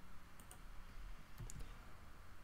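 A few faint clicks of a computer mouse and keyboard as a number is entered into a form field: two light ticks about half a second in and another about a second later.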